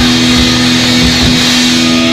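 Live rock band with loud distorted electric guitars holding one sustained note over drums and ringing cymbals, near the end of the song. The low drum and bass hits thin out a little past halfway while the held note rings on.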